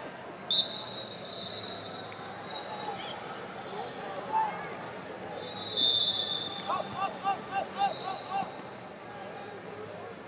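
Wrestling tournament hall: referees' whistles from other mats sound on and off over the voices of coaches and the crowd. About seven seconds in comes a quick run of about five short squeaks from wrestling shoes on the mat.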